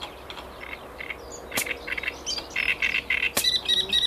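A bird singing: quick runs of short chirping notes starting about halfway through, then a fast trill of repeated high notes near the end. Two sharp clicks, about one and a half and three and a half seconds in.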